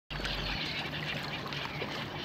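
Small waves of lake water lapping and trickling irregularly against shoreline rocks.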